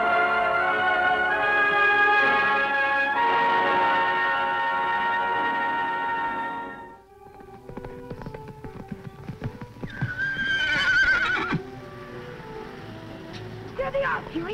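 Background score music with sustained notes fades out about seven seconds in. After it come a horse's hooves clopping and, about ten seconds in, a loud horse whinny with a wavering pitch lasting about a second and a half.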